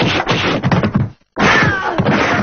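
Film sound effects of a rapid run of whacks and crashing hits, cutting out abruptly for a moment just after a second in before resuming.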